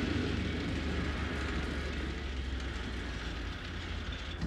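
Steady low rumble of heavy vehicle engines in a war film's soundtrack, even and unbroken, with no rhythmic beat.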